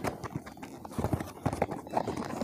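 Fingers and fingernails tapping and handling a printed cardboard box close to the microphone, in an irregular run of taps.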